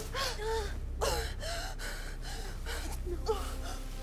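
A person gasping and breathing hard: a run of short, breathy gasps, some with a brief voiced catch, over a low steady background hum.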